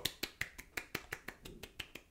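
A faint, quick run of sharp clicks, about eight a second.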